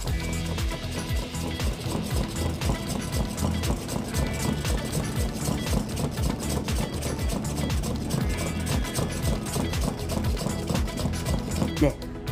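Manual plunger milk frother pumped rapidly in cold milk: a fast, even run of short strokes at half the plunger's height, whipping the milk into foam, under background music.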